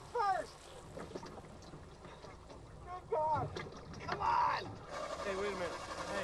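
Short shouts and exclamations from several people over a steady, low wash of noise, most likely water sloshing.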